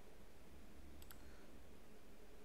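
Faint computer-mouse click about a second in, selecting an on-screen pen tool, over a low steady room hum.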